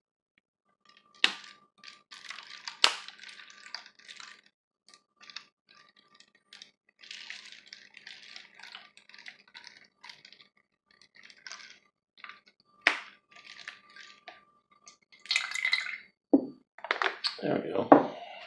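Water poured from a ceramic mug into the narrow neck of a plastic water bottle, trickling and splashing in short irregular bursts, with a few sharp knocks along the way.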